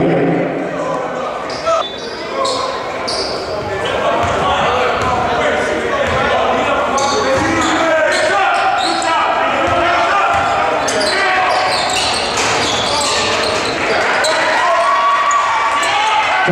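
Basketball bouncing on a hardwood gym floor during live play, under the continuous voices of players and spectators, echoing in a large gym.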